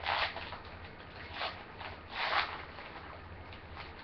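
Foil wrapper of a trading card pack crinkling and tearing as it is ripped open by hand. It comes in a few short rips, the loudest right at the start and about two seconds in.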